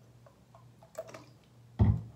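A few small plastic clicks as a Bio True contact lens solution bottle is handled over the palm, then a loud, dull thump near the end as the bottle is set down on the counter, over a faint steady low hum.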